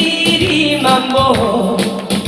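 A woman singing into a microphone over amplified backing music with a steady beat.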